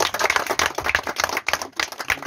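A small group of people applauding: a quick, dense run of sharp hand claps.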